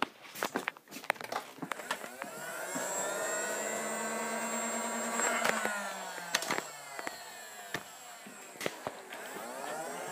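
Motorized Nerf blaster's flywheel motor spinning up to a steady whine, holding for a few seconds, then winding down with falling pitch. Scattered clicks and knocks from handling the blaster.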